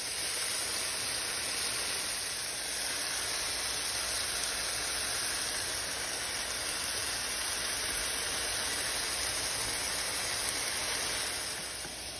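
Steady frying sizzle of seasoned chicken breasts browning in a hot pan, a continuous even hiss that eases off slightly near the end.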